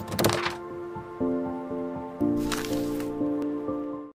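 Intro music for an animated logo: sustained chords that shift twice, with a swishing hit near the start and another about two and a half seconds in. It cuts off abruptly at the end.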